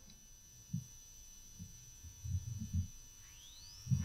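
Soft, muffled taps of typing on a laptop keyboard: a couple of single taps, then a quick run of them a little after two seconds in. Under them runs a steady high-pitched electrical whine, and a short rising chirp comes near the end.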